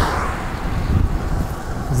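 Wind rumbling on the microphone and road noise from an electric bike riding at about 33 km/h on the throttle, with a higher hiss that fades in the first half-second. The bike's motor itself is very quiet.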